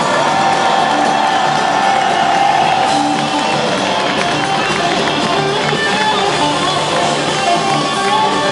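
Live electric guitar solo, heard from within the audience. It opens with one long held high note of about two and a half seconds, followed by shorter notes, with the crowd cheering underneath.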